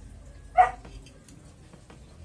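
One short, sharp animal call, like a single bark, about half a second in.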